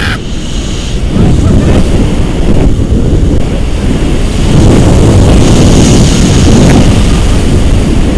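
Heavy wind buffeting the microphone of a camera held out from a tandem paraglider in flight, a loud, rough rush that surges and eases.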